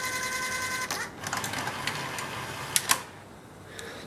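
Sanyo VTC5000 Betamax VCR's tape-threading mechanism running: a steady motor whine until about a second in, then mechanical whirring with a couple of clicks that stops about three seconds in. The machine threads and then goes into shutdown because its take-up hub is not turning.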